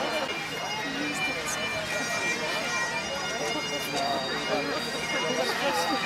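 Highland bagpipes playing in the background, their steady drone held throughout, with people talking over them.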